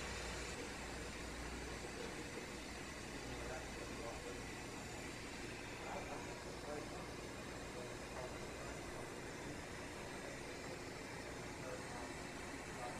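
Faint steady machinery hum with an even hiss, with no distinct knocks or beeps.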